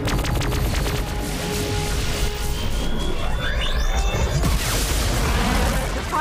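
Dramatic orchestral film score mixed with sci-fi space-battle sound effects: a deep low rumble with booms, a quick run of sharp hits at the start, and a rising whine near the middle as the Romulan plasma weapon fires.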